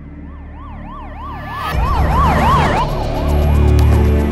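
Ambulance siren on a fast yelp, its pitch sweeping up and down about four times a second, growing louder and then fading out about three seconds in. A deep rumble comes in just before two seconds and runs on under it.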